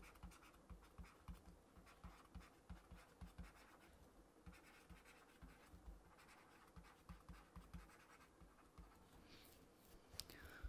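Faint taps and scratches of a stylus writing on a tablet, in two runs of short strokes with a pause between them.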